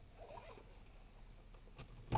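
Near silence inside a car's cabin, broken by a faint short squeak about half a second in and a couple of soft clicks near the end.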